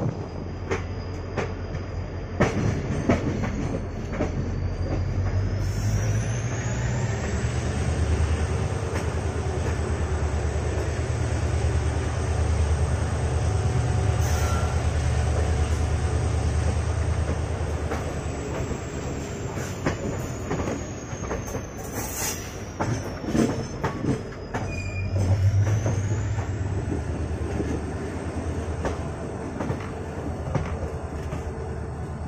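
Express passenger train running on a curve, heard from an open coach doorway: steady wheel-and-rail rumble with scattered clicks. A thin, high wheel squeal rises in pitch about six seconds in, slowly sinks, and rises again near the end.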